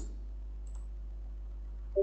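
A low steady hum, then two quick computer mouse clicks right at the end.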